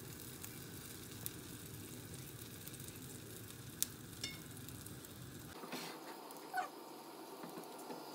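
Pancake batter frying quietly in a little oil in a pan, a faint steady sizzle, with a few light clicks about halfway through.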